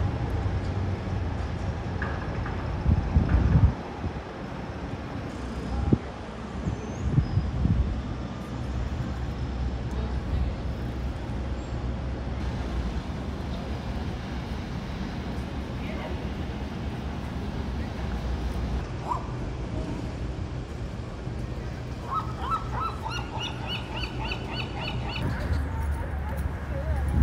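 Outdoor street ambience: a steady low rumble with a few louder gusts or knocks a few seconds in. Near the end a bird calls in a quick run of repeated notes.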